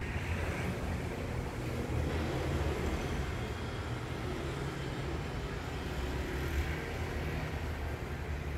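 Vehicle noise: a steady low engine rumble with a hiss over it, coming in suddenly at the start.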